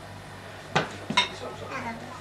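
Two sharp clinks of kitchenware about half a second apart, the second ringing briefly, over a steady low hum.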